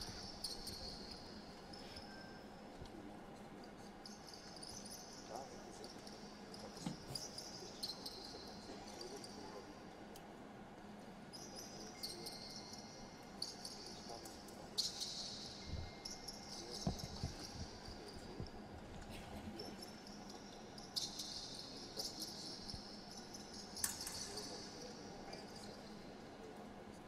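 Fencers' shoes squeaking on the piste during footwork, in short high squeaks every few seconds, with a few sharp clicks and low thuds of feet landing.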